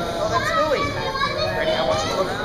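Young children's voices: talking and calling out over one another.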